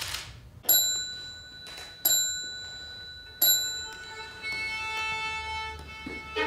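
A small bell-like chime struck three times, about 1.3 seconds apart, each strike ringing on with high clear tones. About four seconds in, a high held instrumental note begins under it.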